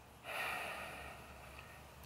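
A man's faint audible breath, lasting under a second, shortly after the start, over a low steady hum.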